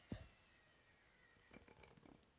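Near silence: a spinning yoyo sleeping on its string while hands form a Rock the Baby cradle, with a soft thump right at the start and a few faint string-handling ticks about a second and a half in.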